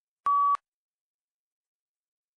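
A single short electronic beep, one steady high tone lasting about a third of a second. It is the PTE test's recording-start tone, signalling that the microphone has begun recording the answer.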